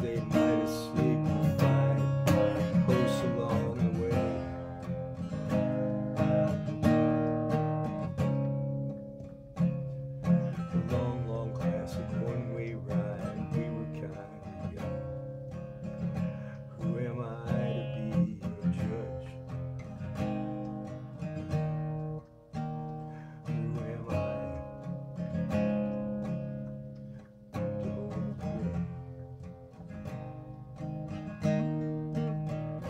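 Acoustic guitar strummed in a steady rhythm, playing chords without vocals.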